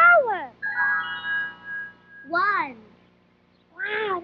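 Short high-pitched voice calls, one rising and falling at the start and one falling in the middle, with a held electronic musical chord of about a second and a half between them.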